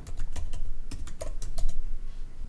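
Typing on a computer keyboard: a quick, even run of keystrokes as a short phrase is entered.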